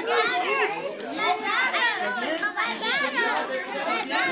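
A room full of kindergarten children talking and calling out over one another in high voices, with no single speaker standing out.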